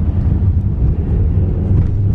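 Low, steady rumble of a moving car, heard from inside the cabin: engine and tyre road noise while driving.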